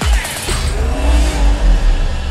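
Movie-trailer sound design: a crash-like hit at the start, then car engines revving over a loud, steady deep bass rumble.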